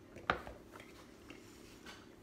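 Mouth sounds of chewing honeycomb: one sharp wet click about a third of a second in, then a few faint ticks.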